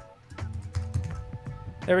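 Typing on a computer keyboard: a quick run of keystrokes over soft background music.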